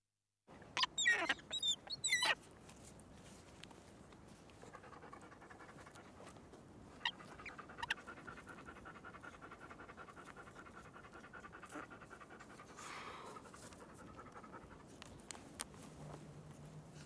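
A dog panting steadily. It begins with a few sharp, high cries about a second in, the loudest sounds in the stretch.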